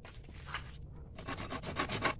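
Hand saw cutting into a piece of driftwood, starting about a second in as a steady run of strokes, about four a second.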